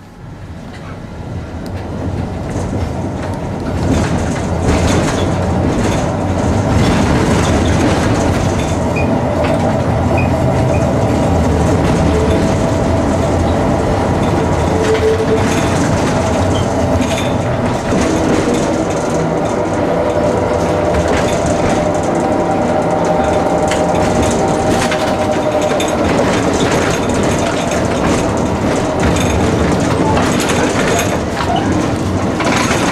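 A 1949 two-axle type N tram pulling away and running along the track, heard from inside the car: wheel and running noise that builds over the first few seconds, then holds steady with frequent knocks and rattles. A steady high whine runs through much of the middle.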